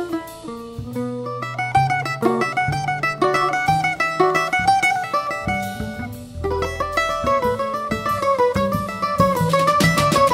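Instrumental choro played live: a bandolim (Brazilian mandolin) picks a quick melody over plucked upright-bass notes, with drum-kit accompaniment.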